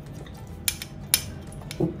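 A metal spoon clinking twice against a bowl, two sharp clinks about half a second apart, with a couple of fainter ticks.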